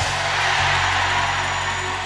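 Church band's sustained keyboard chords under a loud wash of congregation shouting that slowly fades.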